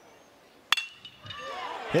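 A single sharp ping of a metal baseball bat striking a pitched ball, with a brief high ring after, as the batter puts the ball in play on the ground toward third base.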